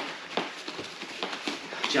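Bare feet stepping and shuffling on rubber gym floor mats during kickboxing footwork: a string of short, soft steps about two or three a second.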